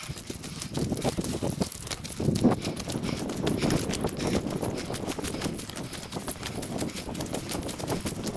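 Footsteps crunching rapidly on a trail of dry fallen leaves and dirt, sped up four times so the steps run together into a fast patter.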